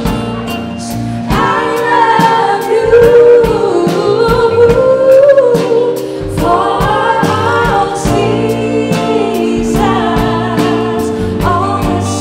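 A live soul band playing, with a lead vocal sung in phrases over electric guitar, bass, keyboard and percussion keeping a steady beat. The singing starts about a second in, breaks off briefly around the middle and returns near the end.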